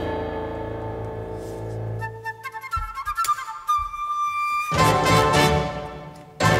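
Live wind ensemble with rock band playing an instrumental passage. A held chord over a low bass fades out over the first two seconds, sparse high woodwind notes follow, and the full ensemble comes in loudly about three-quarters of the way through.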